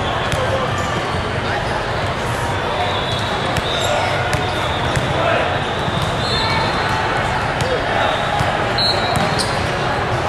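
Echoing hubbub of a large hall full of volleyball courts: many overlapping distant voices with volleyballs thudding on the floor and off hands and arms. A few short high-pitched tones come in during the second half.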